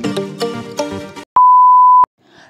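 Background music with a steady beat of repeated notes, cutting off about a second in; after a brief gap comes a single loud, steady, high electronic beep lasting under a second.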